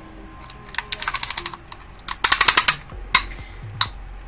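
Tape measure being pulled out and laid across a woven rag-rug placemat: two quick runs of clicks, then two single clicks near the end.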